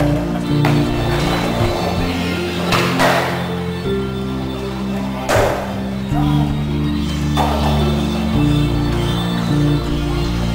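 Background music with sustained low notes that change every second or two, cut by a few sharp hits.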